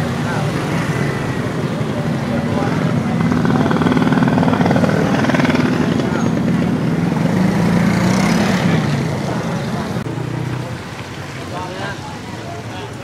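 An engine running steadily with a low drone. It grows a little louder in the middle and drops in level shortly before the end.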